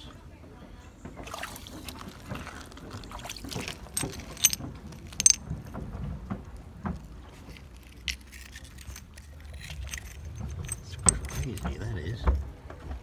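Small stones and a glass shard clinking and ticking together as pebbly gravel is handled, with a few sharper clicks about four and five seconds in and again near the end, over a low rumble.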